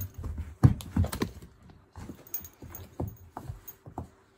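A dog clambering onto a seated person: irregular thumps, scuffles and knocks of paws and body, the sharpest knock about half a second in.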